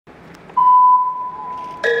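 A single steady electronic beep from the arena sound system, starting about half a second in and fading over about a second: the start signal before a rhythmic gymnastics routine. Near the end, the routine's music begins with bright, mallet-like notes.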